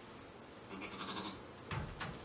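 A Shetland sheep bleats once, a call of about half a second near the middle. Shortly after comes a sharp knock, the loudest sound.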